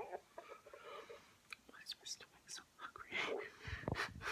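A woman whispering close to the microphone, breathy and unvoiced, with small clicks between the words.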